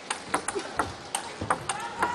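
Table tennis ball clicking sharply off the bats and the table in a rally: a quick series of hits a few tenths of a second apart.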